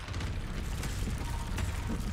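Designed sound effect of something shattering and crumbling apart: many small clicks and rattles of breaking debris over a steady low rumble.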